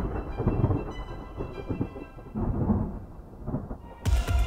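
A storm-like ambient sound bed: low rumbles that swell and fade three or four times over a steady rain-like hiss, with faint high held tones above.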